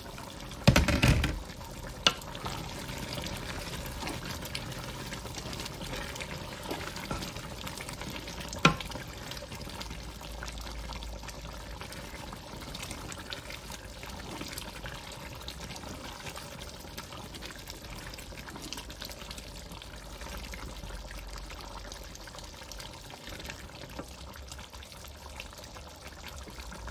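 Pot of bitterleaf soup boiling, a steady bubbling, stirred with a wooden spoon. A clatter sounds about a second in, and a sharp tap about nine seconds in.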